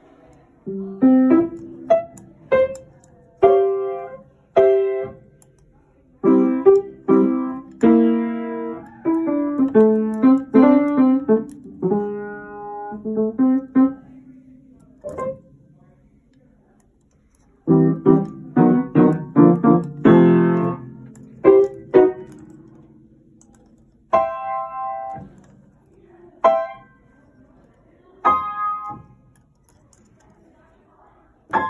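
Kawai upright piano played by hand: single notes and chords struck and left to ring out. There is a pause about halfway, then a burst of denser chords, then scattered notes toward the end.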